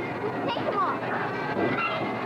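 Busy play-area din: a steady bed of background noise with children's voices and short high squeals over it, plus scattered light clatter.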